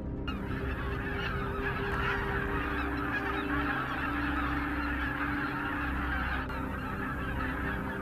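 A large flock of greater white-fronted geese calling all at once: a dense, continuous chatter of many overlapping high honks.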